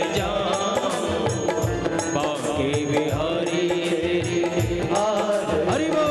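Devotional Hindu singing of a bhajan or chant by a man at a microphone. Long held instrumental notes accompany him, and a drum keeps a steady beat of about two strokes a second.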